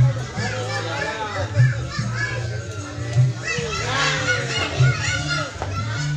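Children's voices chattering and calling over music with a steady low bass pulse.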